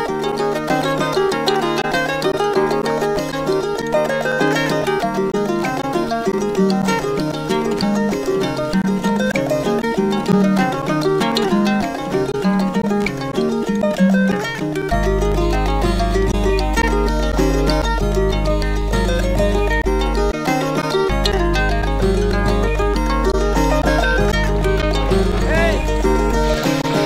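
Live band music led by a plucked acoustic guitar with layered string parts. About halfway through, a deep, steady bass comes in; it drops out for under a second a few seconds later, then returns.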